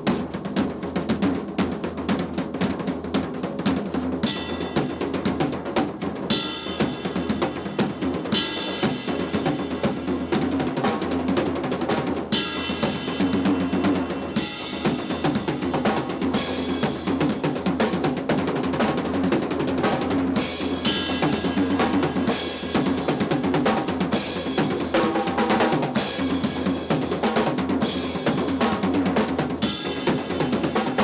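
Pearl Export (EXR) drum kit played solo: fast, dense snare and tom strokes over bass drum, with cymbal crashes ringing out every few seconds, more often in the second half.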